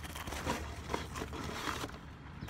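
Paper and clear plastic sleeves rustling and crinkling as hands rummage through a box of old newspapers.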